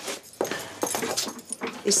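Shoe brush rubbing over a leather shoe in short, uneven strokes.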